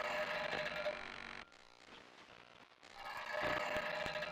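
Live-coded electronic music from TidalCycles: a dense, noisy texture with a held mid-pitched tone that cuts off abruptly about a second and a half in, leaving a quieter layer, then swells back up near the end.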